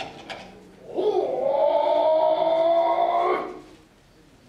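A kagura performer's voice chanting one long drawn-out note, scooping up at the start and held nearly level for over two seconds before breaking off.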